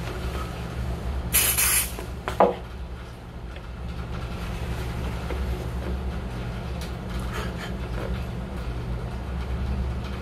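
One short hiss of canned smoke-detector test aerosol (Smoke Sabre) sprayed into a cap held over the detector, lasting about half a second and starting about a second in, followed by a light knock. A steady low hum runs underneath.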